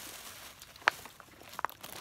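Handling noises from a cardboard candy box: faint crinkling, one sharp click a little under a second in and a couple of small ticks near the end.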